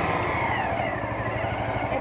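Small motorcycle's engine running at low speed while the bike rolls slowly, heard from the rider's seat.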